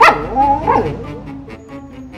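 Siberian husky 'talking': one loud, drawn-out vocalization that starts suddenly, wavers in pitch and fades away over about a second.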